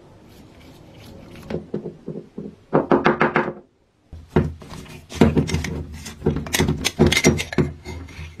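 Rusty metal parts being unscrewed, handled and set down on a wooden workbench: a quick rattle of clicks about three seconds in, a short gap, then a run of metal knocks and clinks against the wood.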